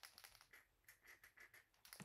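Near silence with faint, quick clicks and scratches of a glitter brush pen being squeezed and worked over paper.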